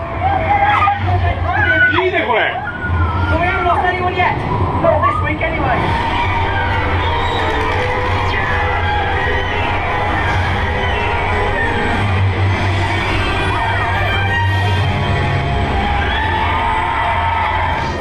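Voices rising and falling sharply in pitch over a low rumble for the first several seconds, then steady music with the rumble underneath.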